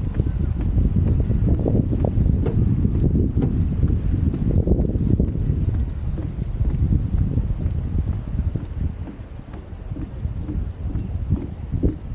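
Wind buffeting the microphone in an uneven low rumble, easing briefly about nine seconds in, with footsteps on a wooden boardwalk.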